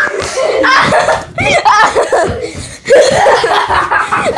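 Children's voices laughing and calling out excitedly, high-pitched and loud.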